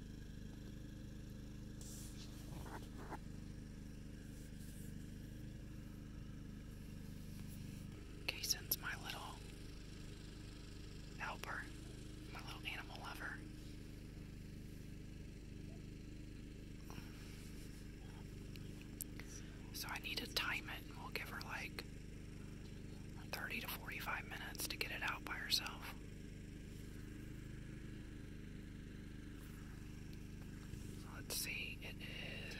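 Hushed whispering in a few short stretches, about eight seconds in, around twelve seconds, and again from about twenty to twenty-six seconds, over a steady low background hum.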